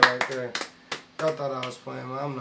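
Two people clapping their hands, a few sharp claps that die out about a second in.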